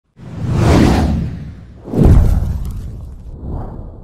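Whoosh sound effects of a logo intro: two loud swooshes about a second and a half apart, the second starting abruptly and the loudest, then a fainter third near the end.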